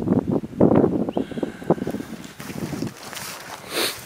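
Wind buffeting the microphone: an uneven low rumble in gusts, strongest in the first couple of seconds and easing later, with a short hissing rustle near the end.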